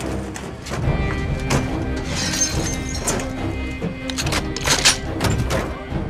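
Dramatic action-film soundtrack music with a steady held tone, punctuated by sharp crashing and smashing impact hits every second or so, the loudest pair just before five seconds in.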